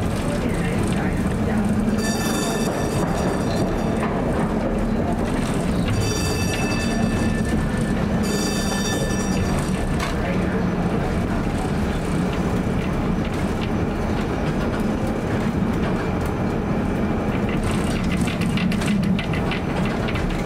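A 1947 PCC streetcar running along the rails: a steady hum of motor and wheels on track. Three spells of high squealing come about two, six and eight seconds in, each lasting a second or so.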